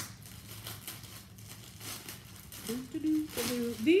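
Clear plastic packaging bag crinkling and rustling as it is handled and opened, in irregular bursts; a woman's voice starts up near the end.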